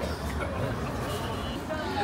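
Street background noise: a steady low traffic rumble with faint voices.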